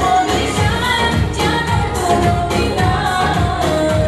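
A woman singing a Central Asian pop song into a microphone over amplified band backing with a steady bass beat.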